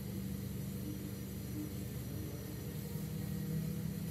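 A steady low mechanical hum that holds level throughout, with no knocks or other events.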